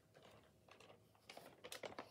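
Faint handling noise: small clicks and rustles as paper and the camera are moved, thickening into a quick run of ticks in the second half.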